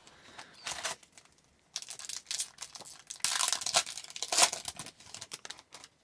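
The wrapper of a 2022-23 Upper Deck Extended Series hockey card pack is torn open by hand and crinkled in several uneven bursts. The loudest tearing comes about three to four and a half seconds in.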